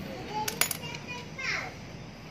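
Children's voices in the background, with a couple of light sharp clicks about half a second in from parts being handled in the open engine case.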